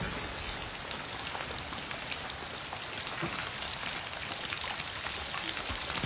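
Steady heavy rain falling on jungle foliage and mud, with many separate drops striking close by.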